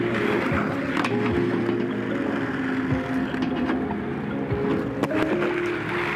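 Inline skate wheels rolling over rough concrete, a steady hiss with a few light clicks, under background music.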